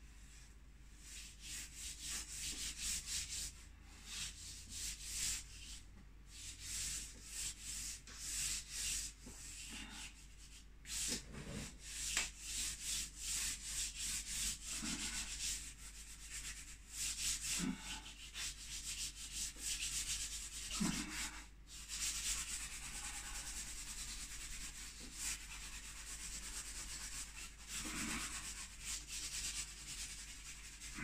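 Charcoal scratching across paper in quick back-and-forth hatching strokes, a dry rasp that comes in runs with brief pauses.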